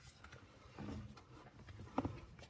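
Quiet room tone with a faint low rumble about a second in and a single sharp click at the end.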